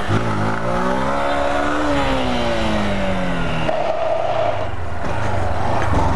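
Honda CG 160 Titan's single-cylinder four-stroke engine under way: it revs up for about two seconds as the motorcycle accelerates, then winds down over the next two seconds as the throttle is rolled off.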